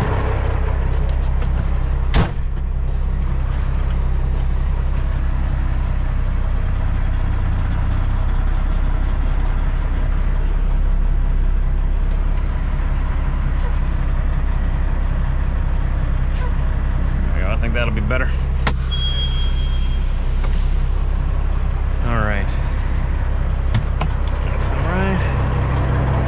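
Kenworth truck's diesel engine running at low speed with a steady low drone as the truck creeps forward a short way. The cab door slams shut about two seconds in.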